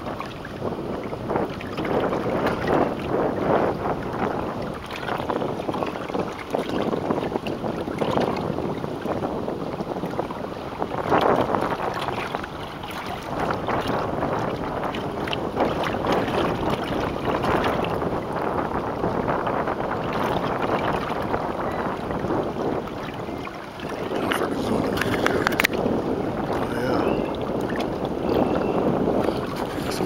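Wind blowing over the microphone on open, choppy water, with the wash of small waves, the noise swelling and easing in gusts every few seconds.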